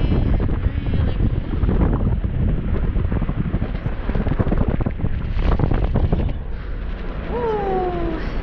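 Wind buffeting the camera microphone, a loud, continuous low rumble. Near the end there is a short pitched cry that falls in pitch.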